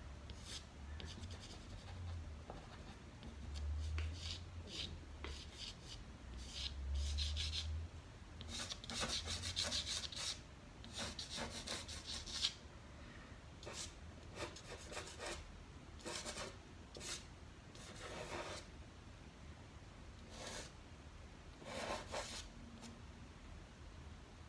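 Soft pastel stick scraping and rubbing across sanded UART pastel paper in a run of short, irregular scratchy strokes, busiest about nine to twelve seconds in, as dark colour is blocked into a drawing.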